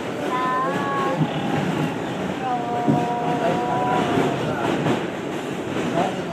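Steady rumble of a subway train car heard from inside while it runs, with two drawn-out high steady tones over it, the second lasting nearly two seconds.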